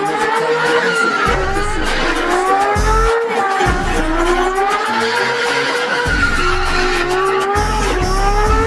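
Drift car's engine revving up and down, with tyre squeal, as it spins in tyre smoke. Background music with a bass beat that cuts in and out plays over it.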